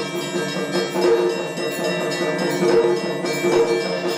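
Music dominated by many bells ringing together, with a louder pulse a little more than once a second.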